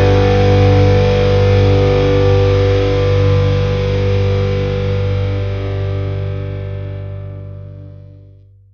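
A rock song's final distorted electric guitar chord, held with the bass and slowly fading out to nothing.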